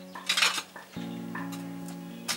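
A few short clattering scrapes, loudest in the first half second, over soft background music whose sustained notes return about a second in.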